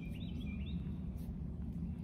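Outdoor ambience: a small bird chirping a few short quick notes in the first second, over a steady low background rumble.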